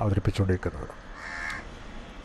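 A single short, harsh bird call, a caw, about a second in, after a man's speech trails off.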